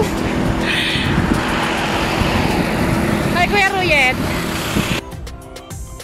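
Steady rush of wind and road noise on the camera microphone of a moving bicycle, with a short snatch of singing a little past three seconds. The noise drops away sharply about five seconds in.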